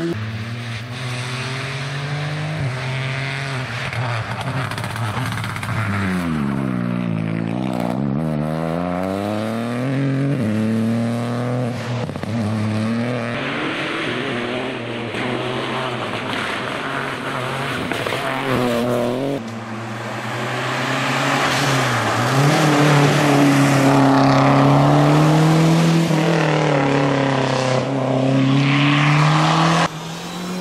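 Rally cars at full attack on a special stage: engines revving hard, pitch climbing through upshifts and dropping off for braking. About six to ten seconds in, the pitch swoops down and back up. The loudest stretch is a car driven flat out in the latter part.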